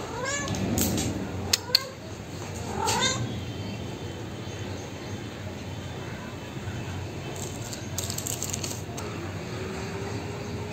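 A domestic cat meowing: three short meows in the first three seconds.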